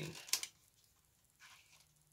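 A single short click about a third of a second in, then near silence: room tone.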